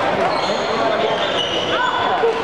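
Echoing gymnasium din: indistinct voices from around the hall mixed with repeated thuds and a few high squeaks, such as sneakers on a hardwood floor.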